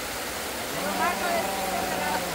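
Steady rushing of a shallow river running over stones, under a voice that holds one long drawn-out word from about a second in.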